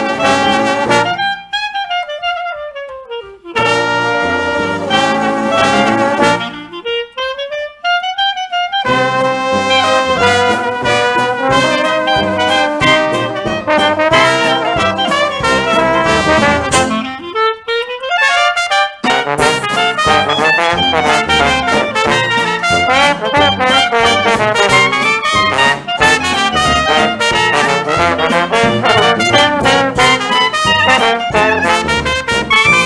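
Jazz band recording led by trumpet and trombone. A few times the band stops and a single horn plays a falling phrase alone, before the full ensemble comes back in.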